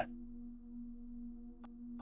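Faint, steady low drone of ambient background music: one held tone with fainter overtones above it. A small click near the end.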